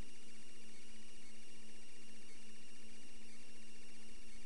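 Steady electrical hum with hiss, unchanging throughout: the background noise of the recording between the narrator's sentences.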